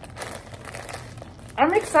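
A plastic poly mailer bag crinkling and rustling as it is handled and pulled open by hand; a voice starts near the end.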